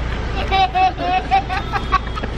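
Young children laughing, a string of short laughs starting about half a second in, over a steady low rumble.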